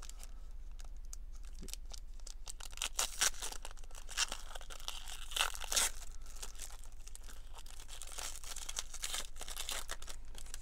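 Foil wrapper of a Panini Contenders football card pack being torn open and crinkled by hand, with a run of sharp rips, loudest between about three and six seconds in.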